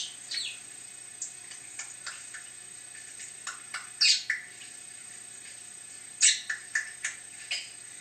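Budgerigar chirping: short, scattered chirps, with louder clusters about four seconds in and again from about six seconds on.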